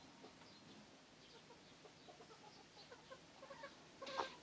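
Near silence: quiet room tone with faint, scattered short bird calls, like distant hens clucking.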